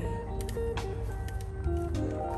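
Background music of long, held notes that change pitch every half second or so, over a steady low hum.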